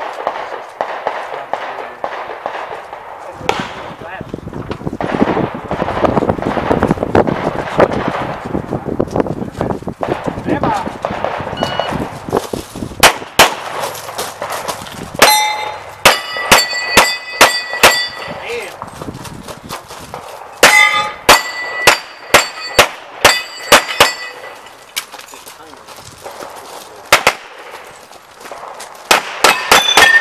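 Pistol shots fired in quick strings, many followed by the ringing clang of hit steel targets. The shooting starts a little under halfway through and comes in bursts, with a rapid flurry near the end.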